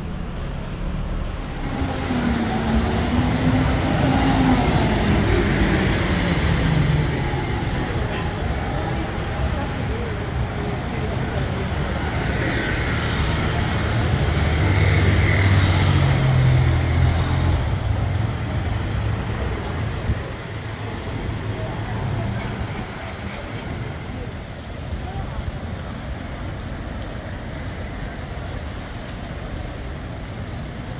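Busy city street traffic: a city bus and motor scooters going by with their engines running, over a background of pedestrians talking. It is loudest in the middle as the bus passes, then eases to a steadier traffic hum.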